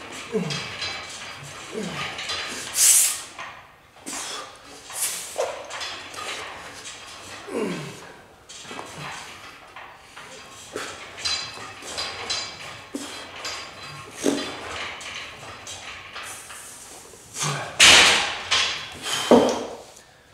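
A man's strained grunts, short and falling in pitch, repeated through a set of arm-wrestling training pulls on a strap handle hooked to a cable, with scattered equipment noise and a loud burst of clatter near the end.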